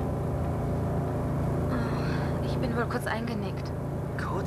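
Steady low drone of a bus engine and road rumble heard from inside the passenger cabin.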